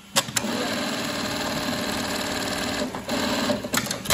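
Brother 9820-01 computerized eyelet buttonhole machine sewing a buttonhole: two sharp clicks as the cycle starts, then a fast, steady stitching run for about three seconds with a brief break, and a few more clicks near the end.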